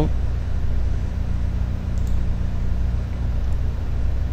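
Steady low hum in the background, with a couple of faint ticks about two seconds in and near the end.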